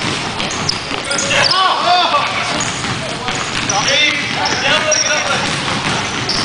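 Basketball bouncing on a hardwood gym floor during play, with players' indistinct calls and short squeaking sounds echoing in the hall.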